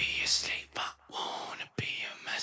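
A voice whispering in short breathy bursts, with a sharp click at the start and another near the end.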